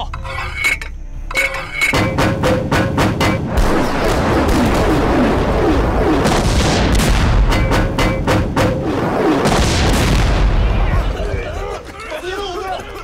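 Artillery barrage from a film soundtrack: a rapid run of cannon shots in the first few seconds, then continuous shell bursts and deep rumble as the shells land in clouds of coloured smoke.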